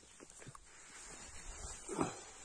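Dry fallen leaves rustling and crunching underfoot, growing from about a second in, with a brief voice-like call at the very end.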